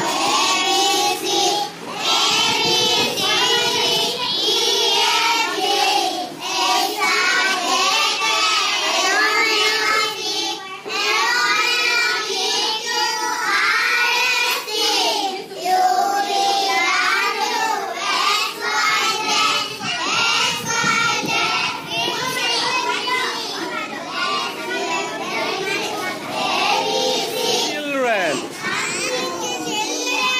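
Young children's voices in a group, singing together and talking over one another.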